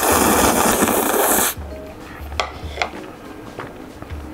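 A person loudly slurping a mouthful of stir-fried instant noodles for about a second and a half. This is followed by quieter chewing with a few soft mouth clicks.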